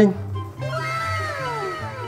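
A woman's mock-crying wail sliding down in pitch over about a second and a half, over background music.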